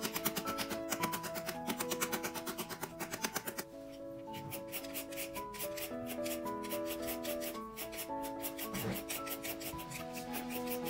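A peeled green papaya being scraped into strips, first with a knife and then with a hand shredder, in quick repeated scraping strokes. Background music plays throughout.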